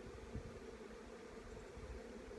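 Honeybees at an opened hive humming in a faint, steady drone, with a brief low thump about a third of a second in.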